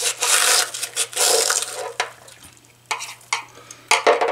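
A screwdriver chipping and scraping away the packing over the anode rod's hex nut on top of an electric water heater. Rasping strokes come in the first two seconds, then a few sharp clicks, over a steady low hum.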